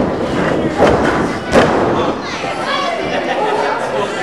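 Two sharp thuds of impacts in a wrestling ring, about a second and a second and a half in, over crowd voices and shouting that carry on after them.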